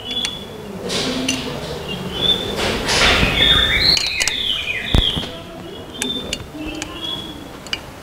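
Flywheel bolts being fitted and turned by hand on an engine flywheel: a few sharp metal clicks and clinks, the loudest about five seconds in, with a scraping rustle about three seconds in.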